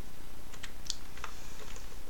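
A handful of scattered keystrokes on a computer keyboard, typing a command, over a steady low hum.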